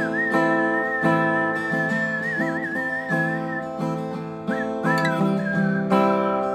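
A person whistling a melody over a strummed acoustic guitar: one long held whistled note that wavers near the middle, a short break, then a falling phrase settling onto a lower note near the end.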